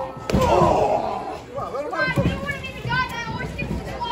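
One sharp impact about a third of a second in, a wrestler's blow landing on his opponent slumped over the ring ropes, followed by shouting from a small crowd, high children's voices among them.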